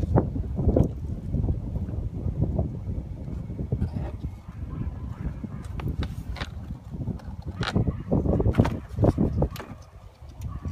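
A plastic engine-bay cover being handled and fitted back into place, giving scattered knocks and scrapes over a low rumble on the handheld phone's microphone.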